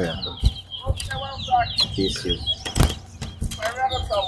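Caged twa-twa finches singing in rapid, warbling phrases, with a couple of sharp taps and voices murmuring underneath.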